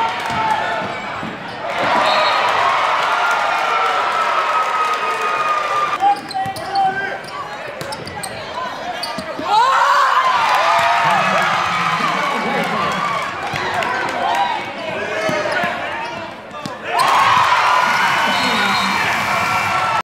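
Indoor basketball game sound: a basketball bouncing on the court, sneakers squeaking and crowd voices in a gym. The crowd gets louder about ten seconds in as a shot drops through the net, and again near the end.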